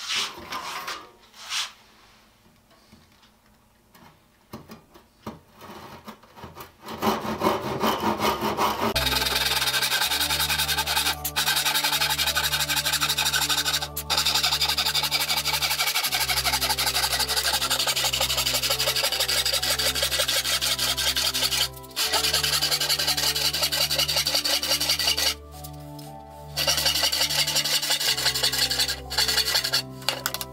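Disston No. 12 handsaw, 10 teeth per inch, sawing through a wooden board with quick, steady strokes. The sawing begins after a few quiet seconds of handling and pauses briefly a few times. Background music with steady bass notes plays under it.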